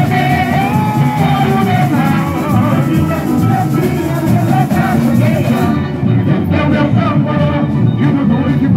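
Samba-enredo sung over a samba school drum section (bateria), loud and continuous with dense driving percussion. The treble dulls about six seconds in.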